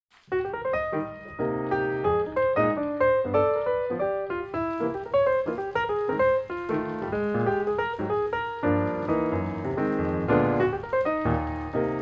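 Background piano music, a steady run of quick notes over lower chords.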